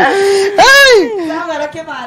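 A woman's drawn-out wailing vocal cry into a microphone while she laughs: one held note, then a louder one that swoops up and falls back, then a few quieter words.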